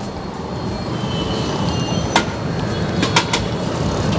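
Road traffic: a low engine rumble from a passing vehicle, growing steadily louder, with a few sharp clicks about halfway through and again a second later.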